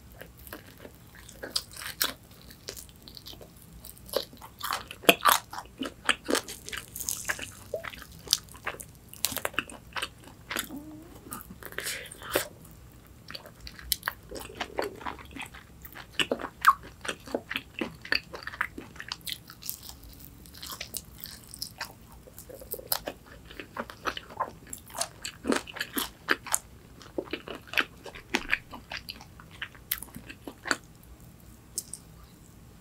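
Fried chicken wings being bitten and chewed: irregular sharp crunches of the fried coating between quieter chewing.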